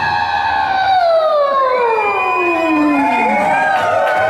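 A male singer's voice, amplified live, holding one long note that slides steadily down in pitch over about three and a half seconds.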